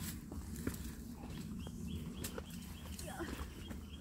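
Footsteps crunching and twigs snapping on dry leaf litter, in scattered sharp clicks. From about the middle on, a small animal repeats a short high chirp about four times a second.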